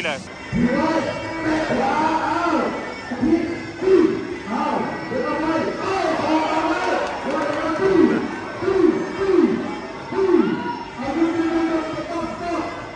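A man's voice speaking continuously in the arena during the break between rounds, over crowd chatter in the hall.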